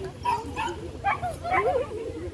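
Small dog barking in short, sharp yips, several times about half a second apart, while running an agility course.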